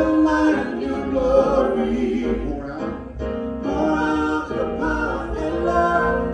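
Praise team singing a gospel worship song in harmony, several voices holding long notes together, with a short break about three seconds in.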